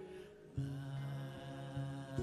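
Slow worship music on acoustic guitar and piano. A held chord fades at first, then a new chord is struck about half a second in and rings on, with further soft strums.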